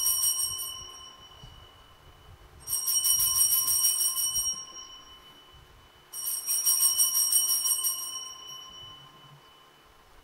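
Altar bells rung at the elevation of the chalice during the consecration. A first peal dies away, then the bells are shaken again about three seconds in and again about six seconds in, each peal a rapid jingle of high ringing tones that fades over a second or two.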